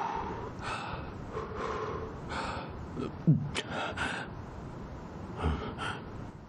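A man breathing heavily in short, sharp gasps, about one breath a second, with a brief falling vocal sound about three seconds in.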